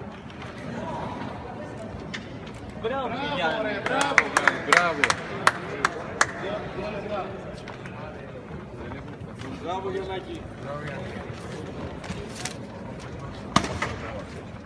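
Sharp clicks of table-football playing figures being flicked against the ball, a cluster of them between about four and six seconds in and one more near the end, over people talking.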